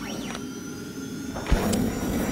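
Electronic logo sting for an animated title card: held synthetic tones with a pitch sweep near the start, then a low hit and a louder whoosh about a second and a half in.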